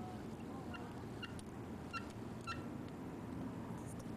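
A bird chirping: a series of short, sharp chirps about half a second apart, over a steady low background hum.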